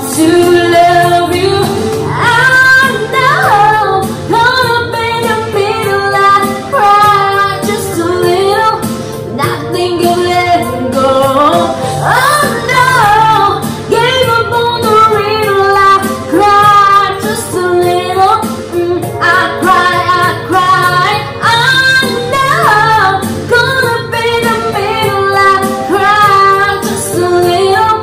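A woman singing with long held notes and sliding runs over a karaoke instrumental backing track.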